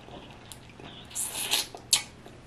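Close-miked mouth sounds of a person chewing a peeled boiled shrimp: soft wet smacks and small sharp clicks, with a brief louder swell about a second and a half in and a sharp click near the end.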